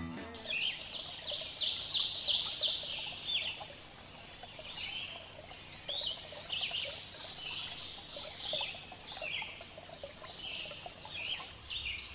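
Small birds chirping: many short, high calls falling in pitch, thickest in the first few seconds and then scattered, over a faint outdoor hiss.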